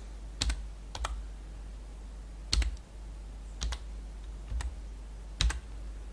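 Computer keyboard keys pressed one at a time to type a short code: about six separate keystrokes, irregularly spaced, over a steady low hum.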